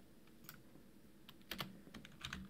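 A few faint keystrokes on a computer keyboard, irregularly spaced, with a small cluster about a second and a half in, as a new line of code is started.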